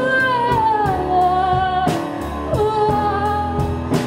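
A woman sings live into a handheld microphone over band accompaniment. She holds long notes: the first slides down in pitch over about a second, and another steps lower about halfway through. A few sharp hits sound in the backing.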